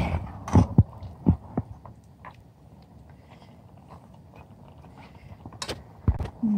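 Metal ladle knocking against a steel cooking pan as mutton karahi is stirred. There are a few sharp knocks in the first two seconds and one more near the end.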